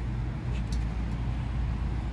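Steady low outdoor background rumble, with a couple of faint clicks as a test-kit hose fitting is threaded onto a backflow preventer's test cock.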